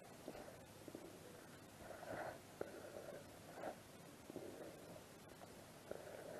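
Very faint rubbing of a cloth over a small brass ornament, with a few brief soft scuffs and light handling ticks.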